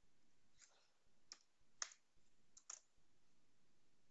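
A handful of faint, sharp clicks from computer keyboard keys being pressed, spaced irregularly over a low room hiss.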